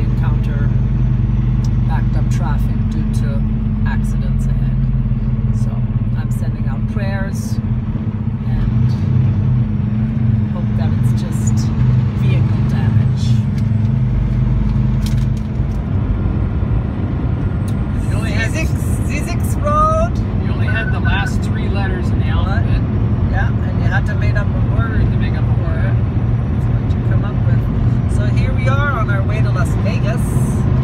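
Steady low drone of a heavy truck's engine and road noise heard inside the cab while cruising on the highway, with faint voices in the second half.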